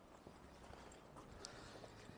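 Near silence, with a few faint footsteps on paving.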